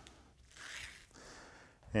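Paper liner being peeled off double-sided basting tape on canvas fabric: a faint papery rasp about half a second in, followed by a softer one.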